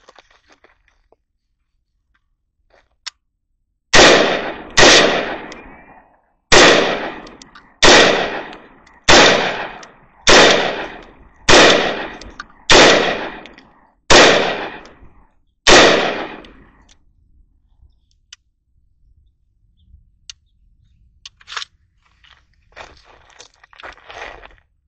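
Rebuilt AR pistol firing ten semi-automatic shots at a steady slow pace, about one every 1.2 seconds. Each loud report trails off over about a second. It cycles every round in this function test fire after the rebuild, and a few faint clicks of handling follow near the end.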